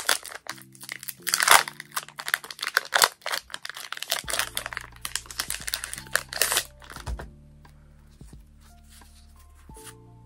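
Foil Pokémon card booster pack being torn open and crinkled in the hands, a dense crackling that stops about seven seconds in. Background music runs under it and carries on alone near the end.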